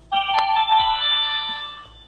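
A short electronic chime: several steady tones sound together, starting suddenly and fading away within about two seconds.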